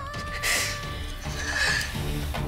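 Dramatic background score: a sustained high melodic note that fades out about halfway through, over a soft low pulsing accompaniment.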